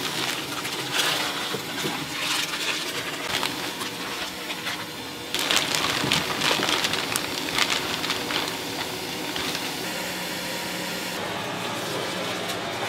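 Plastic bag of rice cakes rustling, then the rice cakes poured from the bag into a steel wok of water: a louder spill of splashes and knocks starting about five seconds in, over a steady background hiss.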